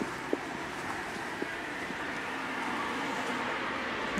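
Steady rushing outdoor background noise with a few faint, brief clicks.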